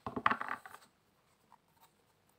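A deck of round tarot cards being shuffled by hand: a quick burst of cards slapping and riffling in the first second, then a couple of faint ticks.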